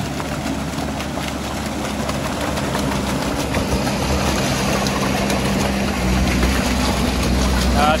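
Sherp amphibious ATV's diesel engine running steadily as it crawls through swamp mud and water, its big low-pressure tires churning the water. The engine gets louder and deeper near the end as the machine draws alongside.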